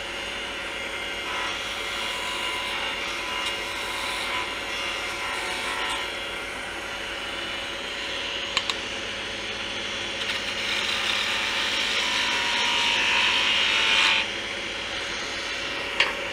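Wood lathe running while a turning tool cuts down a small bocote tenon: a steady hum under a scraping cutting noise. The cutting gets louder for a few seconds near the end, then drops back.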